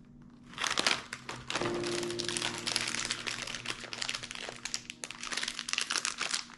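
Crinkly plastic snack packaging being handled, a dense run of crackles starting about half a second in.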